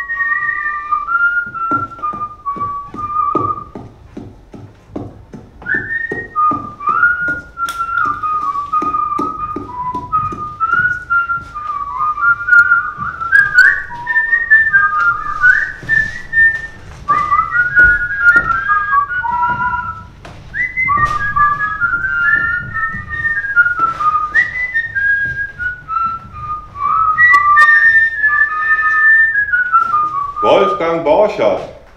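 A person whistling a tune: a continuous melody of stepped notes with small slides, broken off briefly about four seconds in, over scattered knocks and clicks.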